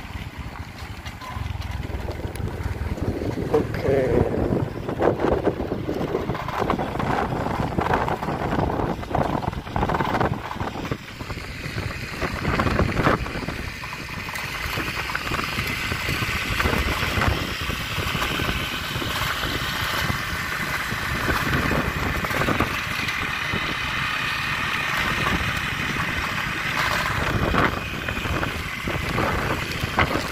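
Wind buffeting the microphone on a moving motorbike, with the bike's engine running underneath and uneven gusts and jolts from the dirt road.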